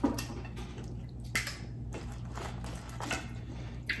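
Close-up wet eating sounds from boiled crawfish: scattered smacks and clicks of shells being peeled and meat being sucked, with a longer sucking sound about a second and a half in.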